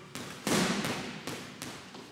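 Boxing gloves striking a heavy punching bag in a quick run of light punches, about six blows, with one noticeably louder hit about half a second in.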